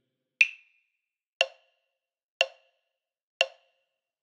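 Metronome clicking a one-bar count-in at 60 bpm: four short wood-block-like clicks, one a second.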